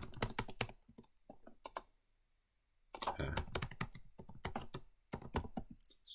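Typing on a computer keyboard: runs of quick key clicks, thinning out and stopping for a near-silent pause of about a second in the middle before picking up again.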